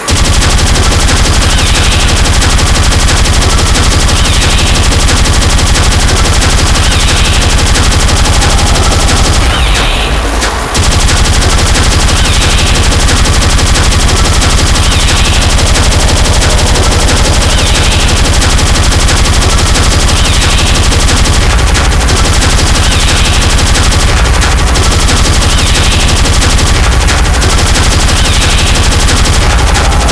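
Speedcore music: a loud, relentless stream of extremely fast, distorted kick drums under a dense wall of noise, with a higher stab repeating about every second and a half. It drops away briefly about ten seconds in, then comes straight back.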